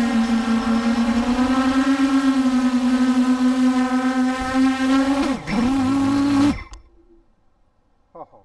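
Motors and propellers of an 8-inch FPV quadcopter (2806.5 1700kv motors, 8-inch three-blade props) humming with a fluttering, wavering pitch. About five seconds in the pitch dips sharply and comes back up with the throttle, then the sound cuts off abruptly about a second and a half before the end.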